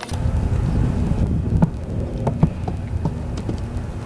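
Wind buffeting the microphone, a steady low rumble, with a few irregular clicks from a horse's hooves on dirt as the mare is ridden outdoors.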